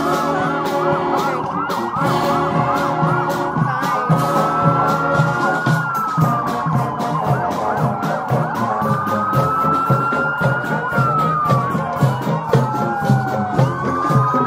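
A marching band's brass and drums playing, with a steady drumbeat, while a siren sounds over it: a quick repeated yelp at the start, then a slow wail that rises and falls about every five seconds.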